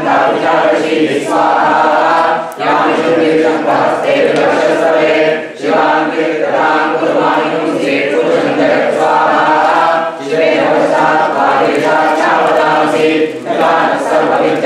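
Many voices chanting Sanskrit Vedic mantras together in unison during a fire ritual (homam), with brief pauses about every three to four seconds.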